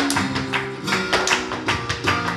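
Live flamenco music: flamenco guitar playing under sharp percussive strikes, about three to four a second, from the dancer's footwork on the stage floor.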